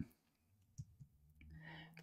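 Near silence: room tone with a faint click a little under a second in.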